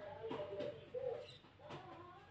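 Faint, low cooing of a bird, a few short calls in a row, with a couple of soft clicks.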